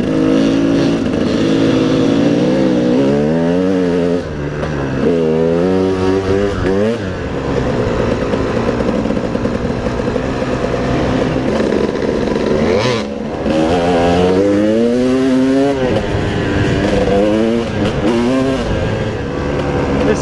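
Dirt bike engine running hard under the rider, its revs climbing and dropping back several times as it accelerates along the track.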